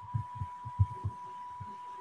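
Faint video-call line noise: a steady high-pitched tone with irregular soft low thumps, several a second.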